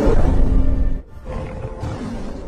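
Big-cat roar sound effect over dramatic music: one loud roar that breaks off about a second in, followed by a second, quieter roar.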